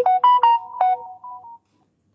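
A short electronic melody of about five quick bright notes, louder than the talk around it, stopping about a second and a half in.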